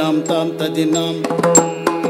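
Yakshagana talamaddale accompaniment: the bhagavata sings over a steady drone, with frequent strokes on the maddale barrel drum and short rings of small brass hand cymbals (tala).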